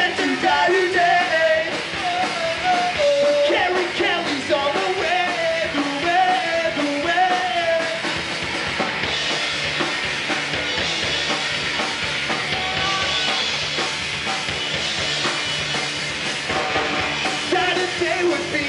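Live punk rock band playing: electric guitar, bass guitar and drum kit under a sung lead vocal. The singing stops about halfway through for an instrumental stretch and comes back near the end.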